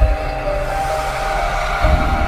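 Cinematic logo-sting sound effect: a sustained horn-like drone over a heavy low rumble, with a deep boom near the end as the animated fireballs strike.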